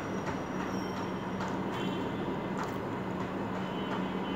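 Steady hiss with a low hum, over which a fork gives a few light clicks as it cuts into a chocolate sponge cake on a plate.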